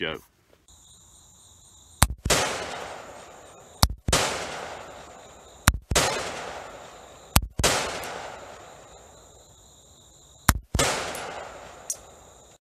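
Gunshots from a long gun, five in all, a couple of seconds apart with a longer gap before the last. Each is a sharp crack followed by a long echoing decay, with a steady high insect drone between the shots.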